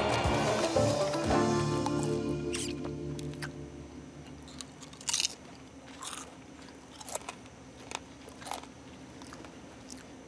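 A short music sting with held tones that fade out over the first few seconds, then a man slowly eating, with a few scattered crunches about a second apart, typical of chewing potato chips.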